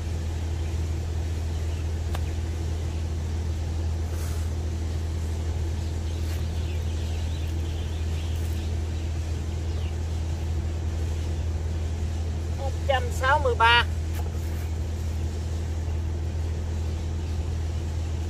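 A steady low motor drone, unchanging in pitch, with a short voice about 13 seconds in.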